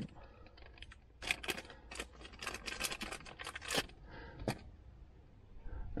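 Small plastic dash-cam mount and its double-sided adhesive tape being handled. A quick run of crackles and clicks lasts about three seconds, then one sharp click comes a little later.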